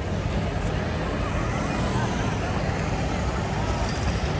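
Traffic on a wet city street: cars and a motorcycle passing with tyre hiss and engine noise, over the chatter of a crowd on the pavement.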